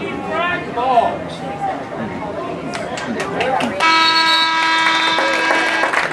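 Spectators chatting. About four seconds in, a lacrosse field's scoreboard horn sounds one steady tone for about two seconds.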